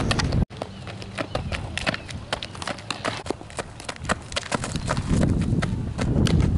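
Outdoor field recording: a run of sharp, irregular clicks and taps, with wind rumbling on the microphone that grows strong again near the end. The sound cuts out briefly about half a second in.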